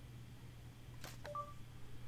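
Two light taps, then a short electronic beep from a Nexus S 4G phone: the Google voice search prompt tone, signalling that the phone is listening for a spoken query.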